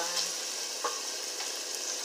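Chicken pieces and onion rings sizzling in a pan with a steady hiss, with a wooden spatula stirring and scraping through them.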